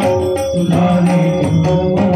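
Live Marathi devotional singing (gavlan) with men's voices into microphones over sustained held tones, accompanied by hand-drum strokes in a steady rhythm.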